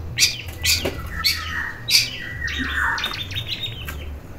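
Caged long-tailed shrike (cendet) calling loudly: four harsh calls about half a second apart, then a falling whistled note and a quick chatter near the end.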